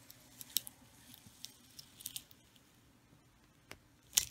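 Clear transfer tape being peeled up off a vinyl stencil on a painted board: faint, scattered crackles and ticks of the plastic sheet coming away.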